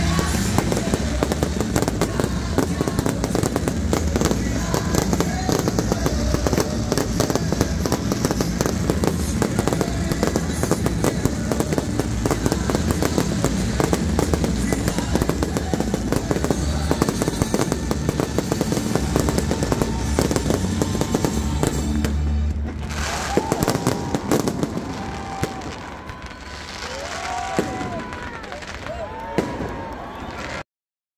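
Aerial fireworks finale: a dense, continuous barrage of rapid crackles and bangs that stops suddenly about 22 seconds in. After that the sound is quieter, with a few rising-and-falling whistles.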